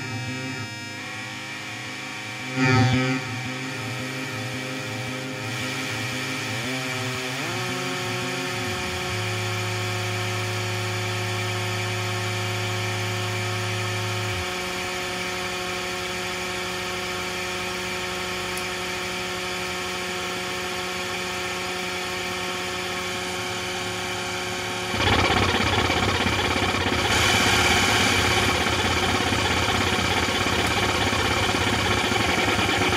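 Modular synthesizer with its modules patched into each other, putting out buzzing drones of several held tones. A low pulsing rhythm runs for the first several seconds, with a loud hit about three seconds in. Pitches slide around seven seconds in, and a steady low hum follows. From about 25 seconds a louder noisy wash comes in.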